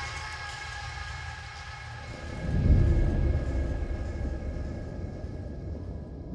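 Ambient electronic music in its closing stretch: sustained synth tones over a deep rumble that swells up about two seconds in and then slowly fades.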